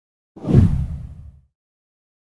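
A single deep whoosh sound effect marking a graphic transition. It swells in just under half a second in and dies away by about a second and a half.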